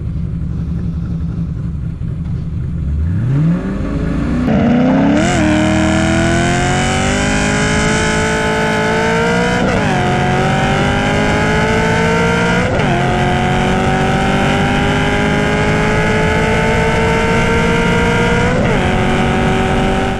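2007 Ford Mustang GT V8 idling, then launching from a stop and accelerating hard at full throttle. The pitch rises through each gear and drops suddenly at each of four upshifts.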